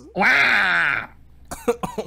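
A man's loud, strained laugh lasting about a second, then a few short breathy bursts near the end. He is laughing through pain, with a cramp under his rib from laughing so hard.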